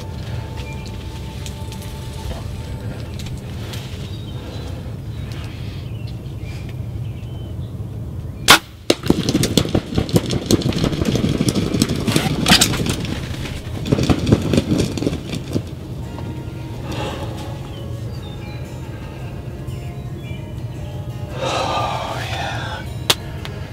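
Compound bow shot at a wild turkey over background music: one sharp crack about eight seconds in, followed by several seconds of loud rapid rustling and flapping from the hit bird, with another flurry a few seconds later.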